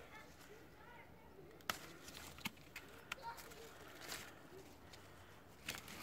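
Quiet handling sounds of apple-tree leaves and twigs brushing against a handheld phone as it moves among the branches, with a few short sharp clicks scattered through.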